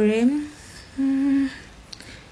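A woman's voice: a vocal sound trailing off right at the start, then a short steady hum on one note, about half a second long, about a second in.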